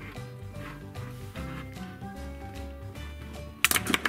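Background music, then near the end a sudden sharp clatter: the Playmobil toy cannon firing its ball at empty plastic Play-Doh tubs.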